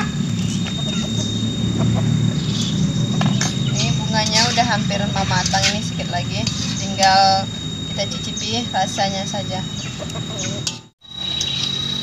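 Chickens clucking on and off over a steady low background noise, with a brief break in the sound near the end.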